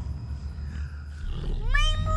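A low, rumbling animal growl, then near the end a loud high-pitched cry that swoops up, holds and falls.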